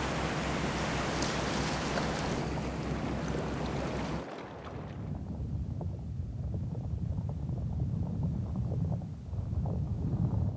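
Underwater ocean ambience: a steady rushing hiss that changes abruptly about four seconds in to a lower, duller rumble with faint scattered clicks.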